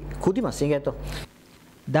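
A man speaking for about a second, then a short hissing noise and a brief quiet gap.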